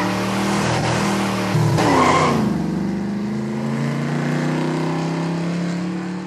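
Car sound effect of a vehicle driving off: the engine revs up sharply about two seconds in, then runs on with its pitch slowly falling as it pulls away.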